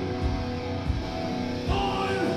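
Live metal band playing: electric guitars hold sustained, ringing notes over the band. A voice comes in near the end.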